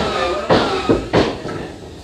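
About four sharp knocks on wooden timber, irregularly spaced over a second and a half, growing fainter toward the end.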